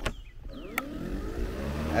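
EGO LM2100 cordless electric mower's motor and blade speeding up in long, thick grass: a whine that climbs steadily in pitch and loudness over the last second and a half, after a click at the start and another just under a second in.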